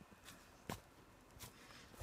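Near silence with a few faint clicks of a phone being handled, the most distinct about a third of the way in.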